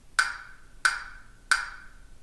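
Three sharp wood-block-like knocks, evenly spaced about two-thirds of a second apart, each with a short ringing tone that dies away: an IsoTek set-up disc channel-balance test signal played through the left loudspeaker.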